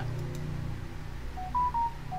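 Short electronic beeps from the Zoom app on a computer: three quick tones of differing pitch about one and a half seconds in, over a faint steady low hum.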